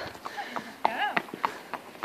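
Hooves of a walking horse clip-clopping on brick block paving.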